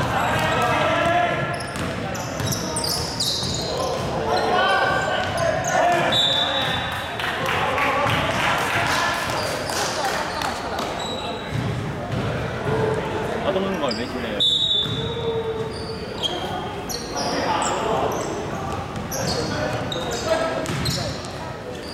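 Basketball game on a hardwood gym floor: a ball bouncing on the court, with sneakers squeaking briefly a couple of times, echoing in a large hall.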